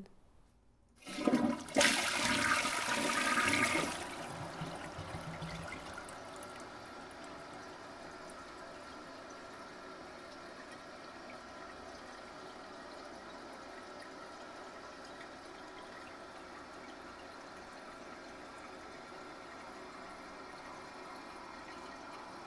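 A toilet flushing: a loud rush of water begins about a second in and dies down after about three seconds, leaving a long, steady, quieter hiss of water refilling.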